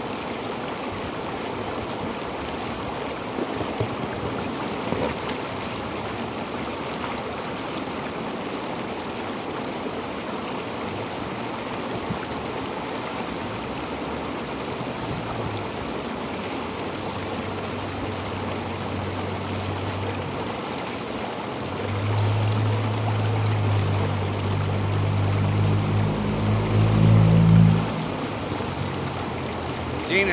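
Inflatable hot tub's bubbling water, a steady rushing and churning. In the last third a low hum comes in, grows louder, and cuts off suddenly shortly before the end.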